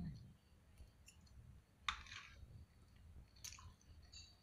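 Faint chewing of a mouthful of penne pasta, with a few short sharp clicks; the loudest comes just under two seconds in and another near the end.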